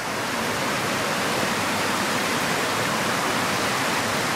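Creek water rushing over the rhyolite rock of a shut-in waterfall: a steady, even rush with no breaks.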